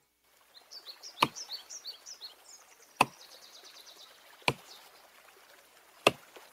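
Axe chopping wood, three sharp strikes about a second and a half apart, with birds chirping in the background.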